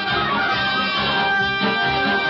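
Studio band playing a short musical bridge, the radio-show cue that marks a change of scene.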